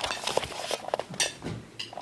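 Light clinks of cutlery and dishes, with short rustles of a paper food wrapper being opened.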